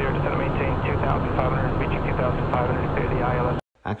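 Cockpit noise of a Cessna Citation 501 twin-turbofan jet in flight: a steady engine and airflow drone with a low hum, with faint voices over it. It cuts off abruptly near the end.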